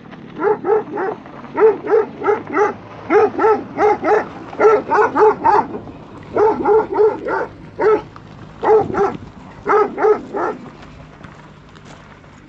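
A dog barking over and over, in quick runs of several barks with short pauses between, stopping about ten and a half seconds in.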